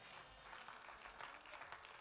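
A congregation applauding: many hands clapping at once in a dense, even patter, fairly quiet.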